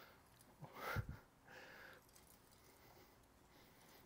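Near silence: room tone, with one brief soft sound about a second in.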